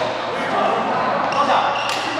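Voices talking in a large echoing badminton hall, with one sharp racket-on-shuttlecock hit near the end.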